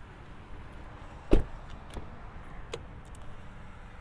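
A vehicle door shutting with one solid thump a little over a second in, followed by a faint click later on.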